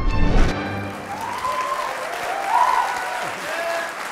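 Intro music ends with a final hit about half a second in, giving way to an audience applauding, with a few cheers rising over the clapping.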